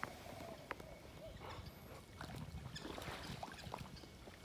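Golden retriever wading in shallow river water: faint, scattered splashing and sloshing, busier in the second half, over a steady low rumble.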